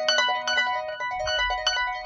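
Concert harp played solo: a quick, repeating pattern of plucked notes, about five or six a second, each left ringing so that they overlap.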